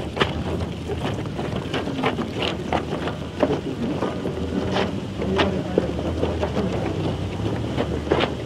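Outdoor wind noise on the microphone, a steady low rumble, with irregular sharp knocks and clatters from a crowd moving close by.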